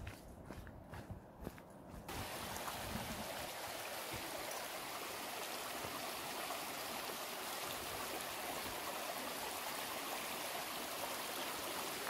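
A few footsteps on a gravel trail. About two seconds in, the steady rushing of a shallow stream running over stones cuts in suddenly and carries on evenly.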